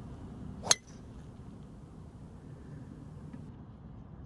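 A driver striking a teed golf ball: one sharp crack with a brief ring, about two-thirds of a second in, over a faint, steady background rumble.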